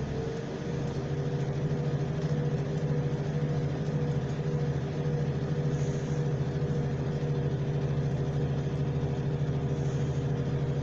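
Inside a class 175 diesel multiple unit pulling away from a station: its diesel engine runs under power with a steady drone, over a haze of wheel and rail noise.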